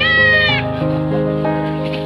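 A newborn goat kid gives one short, high-pitched bleat at the very start, over background music with held notes.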